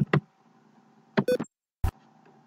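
Computer keyboard keystrokes: a few short, separate taps and clicks with gaps between them, the sharpest one near the end, as letters are deleted and retyped.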